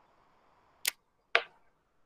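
Two sharp clicks about half a second apart, the second louder, over faint room tone.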